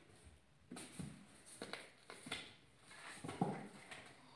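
Faint, intermittent rustling and scraping as a cat moves against and pokes into a cardboard box house, in several short bursts, the loudest a little past three seconds in.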